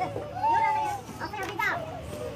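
Several women's voices crying, with high drawn-out wailing cries among tearful talk, loudest about half a second in.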